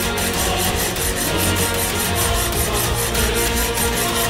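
Tense background score with steady sustained tones over a fast, even scraping rhythm of about five strokes a second.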